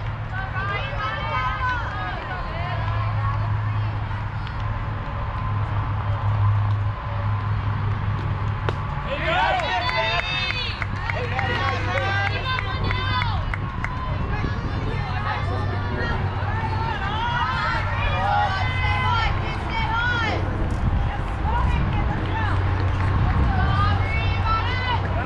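Many voices of softball players and spectators talking and calling out, none of them close; several high voices call out more loudly about ten seconds in.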